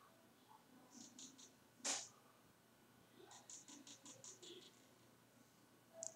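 Faint stylus strokes on a drawing tablet: three quick short scratches about a second in, a sharper tap just before two seconds, then a run of about eight quick short strokes between three and four and a half seconds, over quiet room tone.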